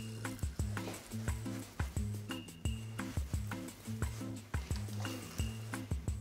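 Background music with a steady beat and a repeating bass line.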